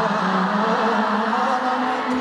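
Live pop concert recorded from the audience: a man's voice holding one long note over keyboard accompaniment.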